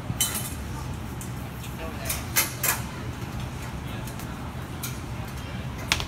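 A handful of short metallic clinks, spread unevenly, from a steel hoop obstacle knocking against its overhead bar as a climber hangs from it and works it along, over a steady low hum.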